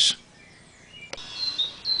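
A bird chirping: a few short, high notes repeating from about a second in, just after a single click.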